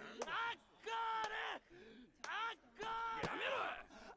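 Fans shouting 'Encore!' over and over, in short loud bursts with brief gaps, from an anime soundtrack.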